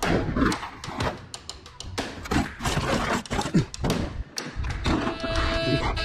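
Scrap sheet metal being shoved and shifted on a loaded trailer, with a run of thunks and clanks. Music comes in about five seconds in.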